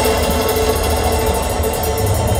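Metal band playing live through a big festival PA, heard from the crowd: a held, droning chord over a heavy low rumble, with a fast steady ticking high up.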